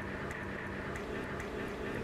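Pipe cutter being turned around a copper pipe, its cutting wheel scoring a groove into the copper: a quiet, steady scraping.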